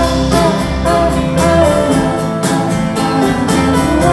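A live folk-rock band playing a song in a concert hall: strummed acoustic guitar, electric guitars and drums under sung vocals, recorded from the audience with the hall's reverberation.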